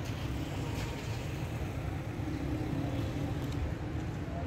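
Steady low outdoor background rumble, even throughout with no distinct events.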